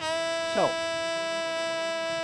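Recorded saxophone track playing back, holding one long steady note. Its tone is real shrill around 3K.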